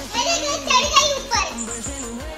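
Background music, with high-pitched voices calling out over it for about the first second and a half.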